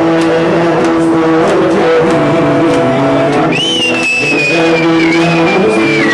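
Live folk music on plucked string instruments, an oud among them, playing a steady accompaniment. About three and a half seconds in, a high, shrill sustained tone comes in and holds, sliding slowly down.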